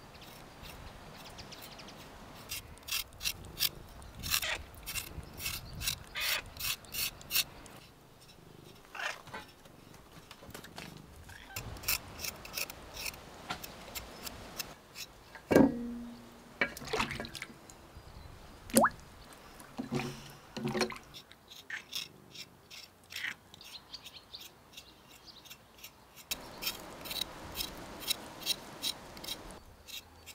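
A kitchen knife scraping the thin skin off new potatoes in short, quick strokes, coming in runs. A few louder single knocks come in between, the loudest about halfway through.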